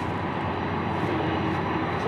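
BNSF diesel locomotives hauling a double-stack intermodal train around a curve, a steady engine drone.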